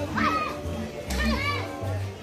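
Children's high voices calling out twice over music with a steady bass beat.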